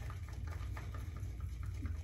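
A wet synthetic shaving brush, a Simpson's Trafalgar T2, swirled slowly on a soaked MoonDance shaving soap puck in its tub to load it with soap: a soft, continuous wet swishing made of many small crackles.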